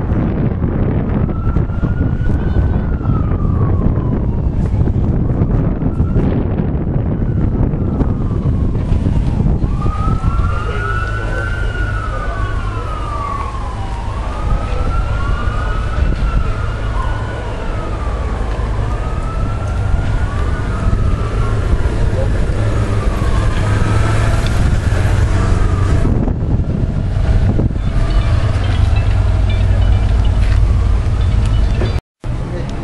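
Sirens wailing, their slow rising-and-falling tones repeating and overlapping, thickest from about ten seconds in. A steady low rumble runs underneath.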